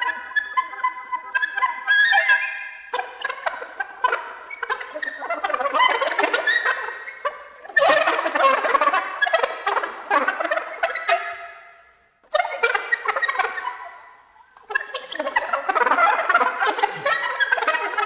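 Solo soprano saxophone in free improvisation, playing dense rapid flurries with several notes sounding at once, a warbling, gobble-like texture. The playing breaks off briefly twice, a little past the middle, then resumes.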